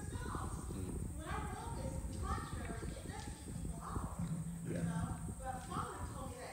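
A woman's voice speaking faintly from a distance, over dense, irregular low thumping.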